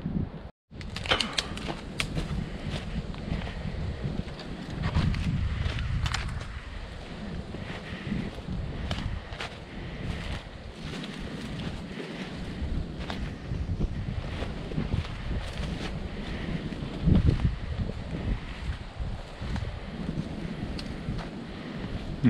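Wind buffeting the microphone with a steady low rumble, over footsteps crunching through dry leaves and patchy snow as someone walks up a wooded slope. All sound cuts out briefly just under a second in.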